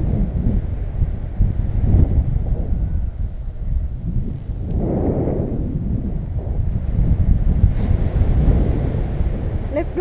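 Wind rushing over the camera microphone in paragliding flight: a loud, low, irregularly gusting rumble.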